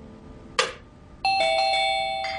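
Doorbell chime ringing, its tones starting abruptly just over a second in and sustaining. A short sharp noise comes about half a second before it.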